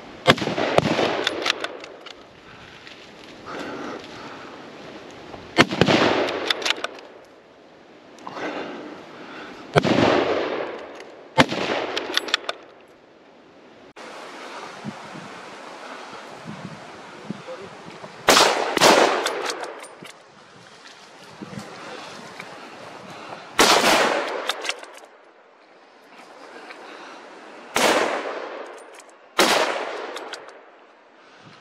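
Hunting rifles firing a string of about eight shots, irregularly spaced a few seconds apart, each followed by a short echo.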